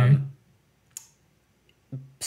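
A man's drawn-out "um", then a pause broken by a single short, faint click about a second in.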